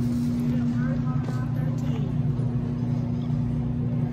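Steady low hum of a large store's background machinery, constant throughout, with faint distant voices about a second in.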